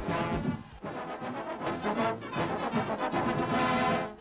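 Marching band brass section playing, with trombones and trumpets.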